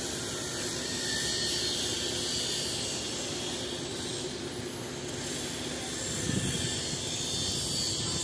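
Heavy construction machinery running steadily: a constant diesel drone with a hiss above it, and a few low bumps about six seconds in.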